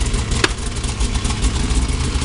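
Three-cylinder two-stroke 800 snowmobile engine idling steadily while it warms up. One sharp click comes about half a second in.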